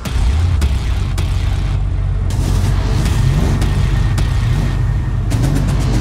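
A classic car's engine starts up as the key is turned and runs loudly, its revs rising and falling twice, under a music score.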